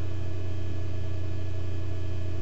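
A steady low hum with no change in level, the background noise of the recording in a pause between words.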